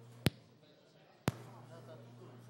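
Conference microphone channel switched off and back on: two sharp clicks about a second apart, the first louder, with the steady background hum cutting out between them.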